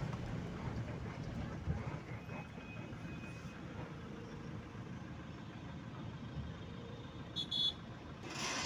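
Car driving, heard from inside the cabin: low, steady engine and road noise. A short high beep comes near the end.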